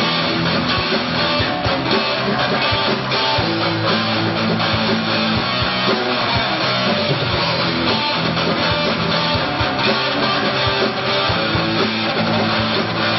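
Live band playing an instrumental passage on electric guitar, electric bass guitar and drum kit, with a steady drum beat.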